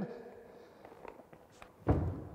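Quiet room with a few faint footsteps and small knocks as a man steps up to a wall holding an unpowered electric drill. A man's voice is heard briefly at the start and again just before the end.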